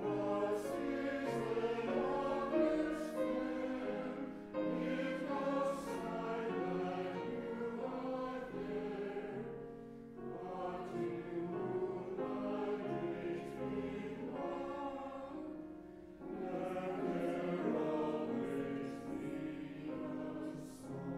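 A mixed church choir of men's and women's voices singing a hymn, in phrases of about five to six seconds with short breaks between them.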